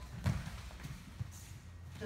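Bare feet stepping and shuffling on a foam wrestling mat as two grapplers move into a body lock. There is a dull thud about a quarter second in and a lighter knock about a second later.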